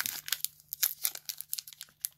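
Foil wrapper of a Pokémon trading card booster pack crinkling and tearing as it is pulled open by hand, a quick run of crackles.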